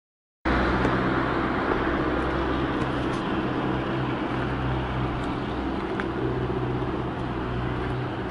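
Car engine running steadily with road noise, as from a car driving along a street.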